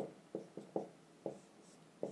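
Dry-erase marker writing on a whiteboard: a few short strokes, which stop about a second and a half in.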